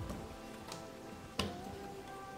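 Soft background music with steady held notes, over three light clicks about two-thirds of a second apart, the last one loudest: jumper wires being pushed into a solderless breadboard.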